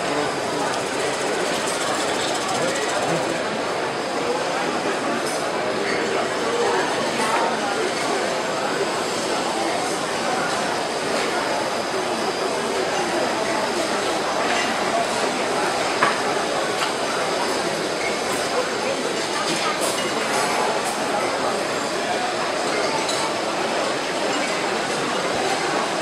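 Wood lathe spinning a large bowl blank while a gouge cuts into it, peeling off continuous ribbons of shavings: a steady dry cutting noise over the lathe's running, with people talking in the background.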